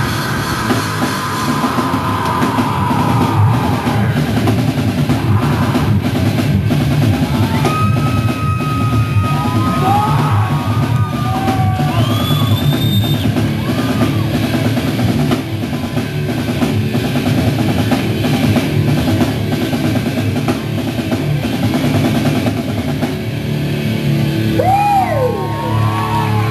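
Rock band playing live: electric guitars, bass guitar and drum kit, with high notes sliding up and down about halfway through and again near the end.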